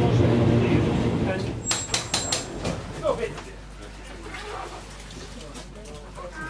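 Traction motors of a 1936 Düwag tramcar humming at a steady low pitch inside the car, dying away about a second and a half in. A quick run of sharp metallic clicks follows about two seconds in, and the quieter rolling car and passengers' voices carry on after.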